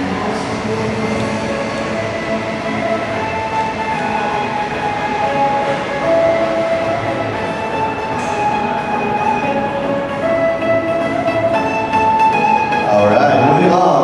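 Music with long held notes that step to a new pitch every second or two, over the chatter of voices in a large exhibition hall.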